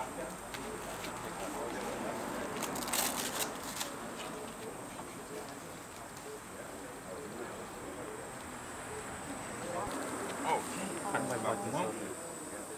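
Outdoor background noise with faint, indistinct voices, stronger near the end, and a brief burst of crackling about three seconds in.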